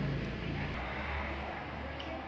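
Indistinct background voices, with a steady low hum setting in about a second in.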